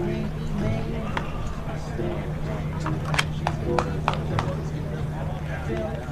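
Faint voices of players and onlookers chattering at a baseball field over a steady low hum, with a handful of sharp clicks or knocks in the middle.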